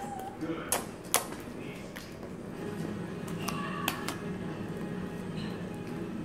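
Sticky homemade slime being squeezed and stretched by hand, giving a few sharp clicks and pops as trapped air pockets burst in it.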